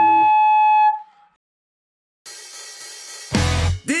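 A loud, steady whistling tone of electric guitar amp feedback for about a second, fading out, followed by a short silence. Then a hissing cymbal wash comes in and the band hits the song's opening about three seconds in, drums and distorted guitar, with singing starting right at the end.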